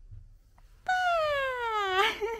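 A baby's single long, high-pitched vocal call that slides steadily down in pitch for just over a second, starting abruptly a little under a second in after a quiet pause.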